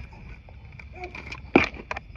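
Handling of a cordless impact wrench and its socket, with a lug nut jammed inside: mostly quiet, then a sharp click about one and a half seconds in and a fainter click just after.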